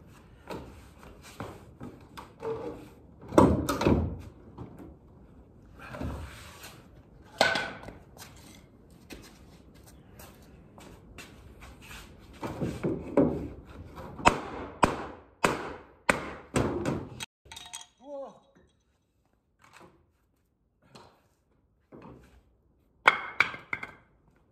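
Heavy wooden thuds and knocks against the end panel of a large antique wooden cabinet as the separated end board is struck and kicked back against the cabinet body. The blows come irregularly: a hard one about three and a half seconds in, another around seven seconds, a quick run of them in the middle, and a last pair near the end.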